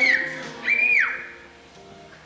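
The last sung note of a children's choir dies away, and two short high-pitched whistle-like tones follow. The second is held briefly and then falls sharply in pitch, and the room goes quieter for the rest of the time.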